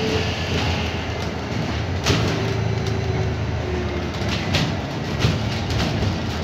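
London bus in motion, heard inside the passenger cabin: a steady engine and road rumble with a faint whine that comes and goes. Several knocks and rattles come from the bodywork, the sharpest about two seconds in.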